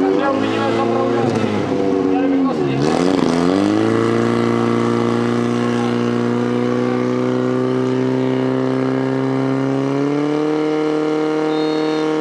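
Portable fire pump engine running hard as it drives water through the attack hoses. Its pitch dips and climbs back about three seconds in, holds steady, then rises a little near the end.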